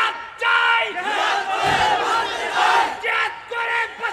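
A large crowd chanting slogans in unison, in a series of short repeated shouted phrases.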